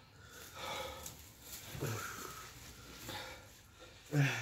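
A man breathing heavily and sighing through the burn of a superhot pepper chip, with one short, low vocal sound about two seconds in.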